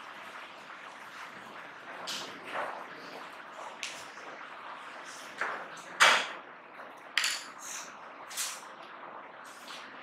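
Classroom room noise: a faint steady murmur with scattered short rustles and knocks, about nine in all, the loudest about six seconds in.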